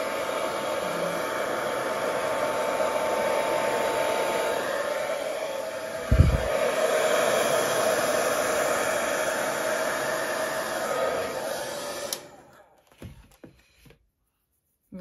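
Hair dryer blowing steadily, pushing fluid acrylic paint across a canvas, with a brief low thump about six seconds in. It cuts off about twelve seconds in, followed by a few faint knocks.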